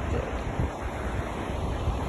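Wind on the phone's microphone, a steady low rumble, over the even wash of surf on a beach.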